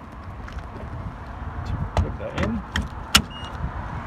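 Rapid-charger CHAdeMO connector being handled and pushed into a Nissan Leaf's charge port: a run of clicks and knocks in the second half, ending in one sharp latch click about three seconds in, followed by a short high tone.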